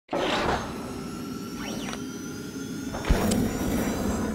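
Electronic logo sting: a whoosh at the start, held synthesized tones with brief gliding sweeps, and a deep hit about three seconds in that is the loudest part.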